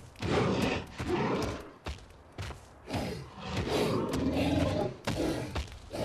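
Dull thuds of a large dinosaur's running footfalls, irregularly spaced, as a heavy animal crosses the finish line.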